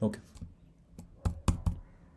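Computer keyboard keystrokes: about half a dozen separate key clicks, most of them in the second half.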